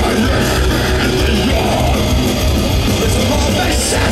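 A live metalcore rock band playing loudly: electric guitars, bass and drums, recorded from within the festival crowd.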